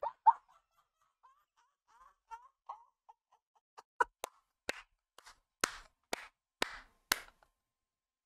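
A man laughing almost without voice, with a few faint wheezes. From about four seconds in he claps his hands about eight times, roughly twice a second.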